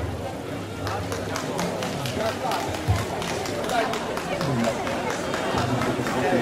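Indistinct chatter of voices with scattered sharp clicks and knocks, the folk band on stage not playing a tune.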